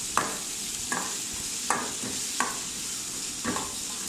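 Sliced onions sizzling in hot oil in a metal kadai, with a slotted metal spatula scraping and stirring them against the pan about five times.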